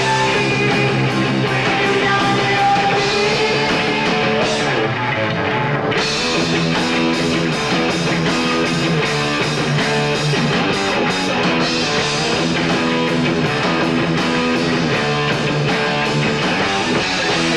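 Live rock band playing: electric guitar over a drum kit, with regular cymbal hits. The cymbals drop out briefly about four and a half seconds in and come back at six seconds.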